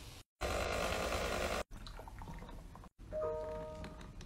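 A second of loud hissing noise, then a short chime of a few held tones about three seconds in: an email notification ding.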